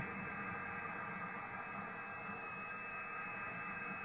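Shortwave receiver audio from a Kenwood TS-870: a steady hiss of band noise with several steady data tones in it, cut off above about 2.7 kHz by the receiver's filter. It is a digital-mode signal, which the operator takes for FT8 or something like it.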